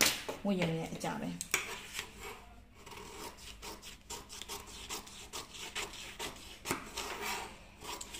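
Scissors cutting through a sheet of pattern paper, with irregular snips and the paper rustling and scraping as it is handled on the table.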